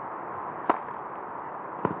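Tennis racket striking the ball on a serve about two-thirds of a second in, then a second sharp hit just over a second later, over steady court ambience.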